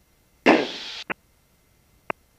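A single spoken "okay" through an aircraft headset intercom, heavy with microphone hiss and cut off abruptly, followed by one short click. The engine is not heard on the intercom feed.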